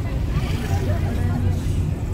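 Car running on the road, its engine and road noise heard from inside the cabin as a steady low hum, with indistinct voices talking over it.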